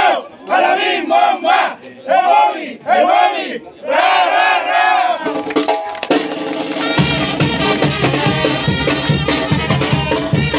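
A group of men shouting a rhythmic cheer in unison, in short loud bursts. About five seconds in, a street brass band strikes up with held brass notes, and drums and low brass join about two seconds later.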